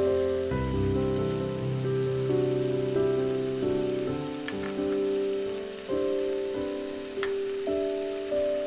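Ground beef sizzling in a frying pan under background piano music, with a few light clicks about halfway through and again near the end.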